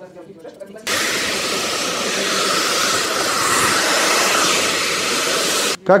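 Hair dryer running: a loud, steady rush of air that switches on about a second in and cuts off just before the end.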